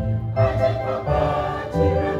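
A church choir singing in chorus, holding long notes, with a low bass line underneath; a new sung phrase begins about half a second in.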